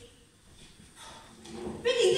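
A brief pause in spoken stage dialogue: quiet hall tone with a faint low sound about a second in, then a voice starts speaking near the end.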